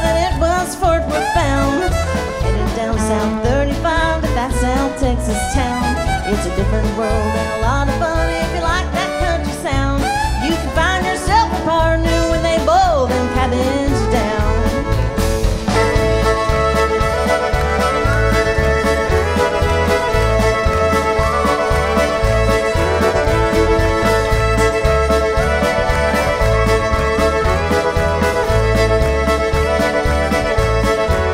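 A live country band with fiddles, drums and electric bass playing a fiddle tune. Bending, sliding melody lines lead the first half; about halfway through it changes to several fiddles holding steady notes together over the band.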